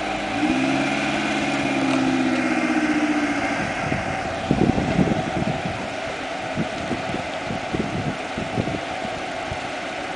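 Suzuki SJ off-roader's engine pulling steadily under light throttle for about three and a half seconds, then dropping back to an uneven, low rumble with irregular thumps as the 4x4 creeps slowly forward.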